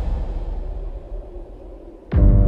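A deep, low rumble from the trailer's sound design, fading steadily away with little left above the bass.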